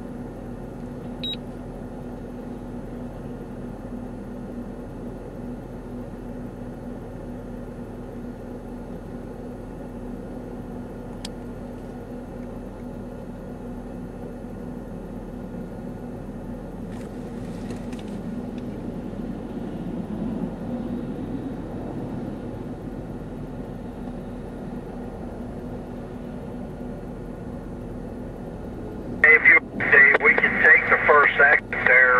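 Steady low hum of an idling vehicle, with a faint tick about a second in and another near eleven seconds, and a slight swell around two-thirds of the way through. Speech over a two-way radio breaks in just before the end.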